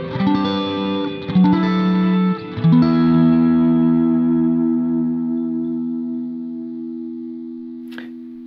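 Electric guitar, a Fender Stratocaster played through a Kemper amp modeller with echo effects, picking a chord passage in which single notes join each chord. About three seconds in a last chord is struck and left to ring, fading slowly.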